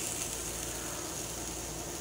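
A sofrito of onion, peppers, carrot and peas sizzling steadily as it fries in a pan.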